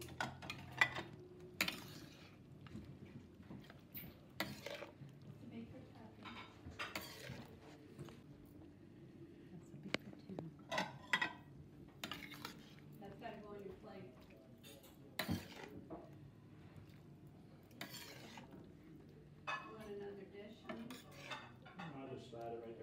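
Long metal spoon stirring pasta in a brothy sauce in a stainless steel sauté pan, clinking and scraping against the pan at irregular intervals.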